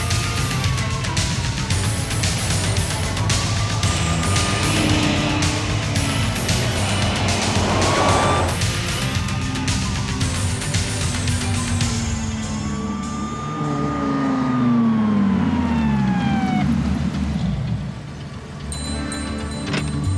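Driving action music with a police siren wailing over it. About twelve seconds in the music drops away, leaving the siren and the engines of a police car and a Dodge Viper sports car passing close by, their pitch falling as they go past.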